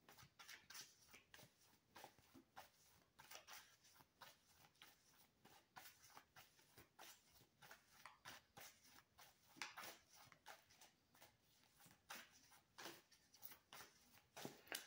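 Near silence: room tone with faint, scattered small clicks and rustles.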